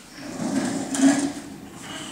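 Hard plastic wheels of a toddler's push-along ride-on car rolling across a hardwood floor, a low rumble that swells about a second in.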